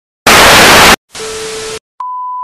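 Television static hiss in two bursts: a very loud one lasting under a second, then a quieter one with a steady tone running through it.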